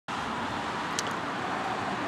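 Steady outdoor background noise of distant road traffic, with a faint click about a second in.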